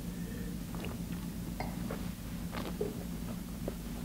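A mouthful of wine being sipped and worked around the mouth in a wine tasting, heard as faint, scattered wet mouth clicks. A steady low hum runs under it.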